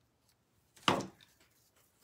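A single snip of scissors cutting through wired fabric ribbon, about a second in.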